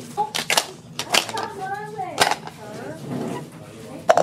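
About four sharp clicks and knocks from pieces of a tabletop dice game striking the table, with scattered voices between them.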